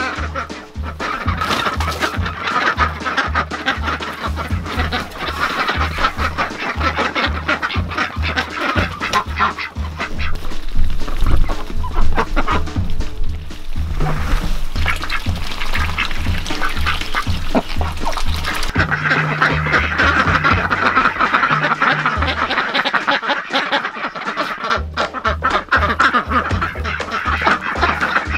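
A flock of domestic ducks quacking as they feed on pumpkin, over background music with a steady low beat that stops for a couple of seconds near the end.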